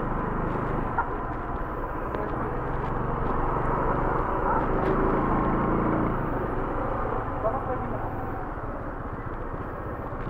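Motor scooter engines idling at a standstill: a steady low drone that swells slightly about halfway through, with voices talking in the background.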